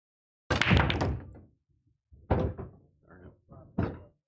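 Pool break shot on a bar-size table: the cue ball smashes into the racked 9-ball rack with a sharp clatter of many balls striking at once, dying away over about a second. Then come separate knocks as the spreading balls hit each other and the rails, a little after two seconds in and again near the end.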